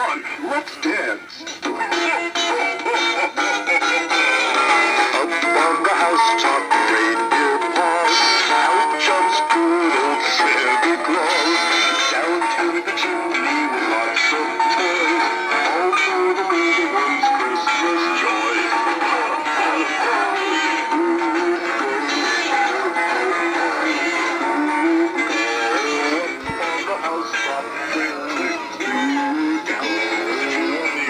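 Several animated singing Santa figures play songs together through their small built-in speakers, so the singing and music sound thin with no bass. It runs steadily throughout.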